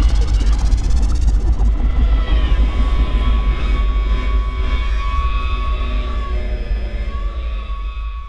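Tail of a TV programme's intro theme: a deep rumble under a dense, noisy sound-effect texture with a few held high tones, slowly fading out.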